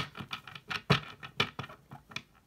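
A deck of tarot cards being shuffled hand to hand, an overhand shuffle: a quick, irregular run of soft card slaps, about four or five a second.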